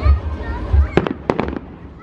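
Fireworks display going off, mostly low-noise fireworks: a quick run of four sharp cracks about a second in, over a low rumble.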